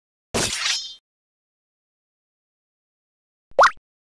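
A crash or shatter sound effect about a third of a second in: a sudden burst lasting a little over half a second, with a ringing, glassy top end. Near the end comes a short sound that rises sharply in pitch.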